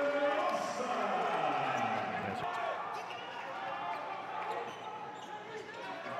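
Basketball game sound in an arena: a crowd's voices with a basketball bouncing on the hardwood court and a few short knocks.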